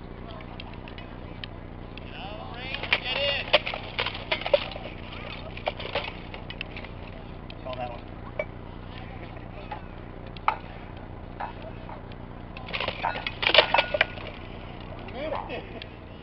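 Rattan sword blows striking armour and shields in sparring: clusters of sharp cracks about three seconds in and again near the end, with a few single strikes between.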